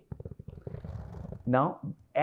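A man's drawn-out, low creaky 'uhh', a rattling hesitation sound in vocal fry lasting over a second, followed by the spoken word 'now' near the end.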